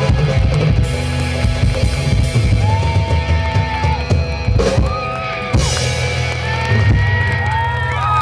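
A live rock band plays loudly through a PA: a drum kit, electric guitar and bass, with long held notes that bend in pitch near the end. It sounds like the closing bars of a song.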